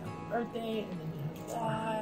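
Soft background music, with two short wavering, pitched vocal calls over it, one shortly after the start and one near the end.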